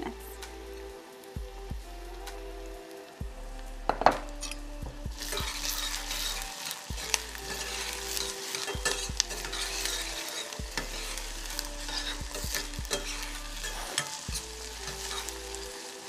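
Chopped onion, garlic and serrano peppers sizzling in oil in a stainless-steel saucepan, with a metal spoon stirring and scraping against the pan. There is a sharp knock about four seconds in, and the sizzle grows louder about five seconds in.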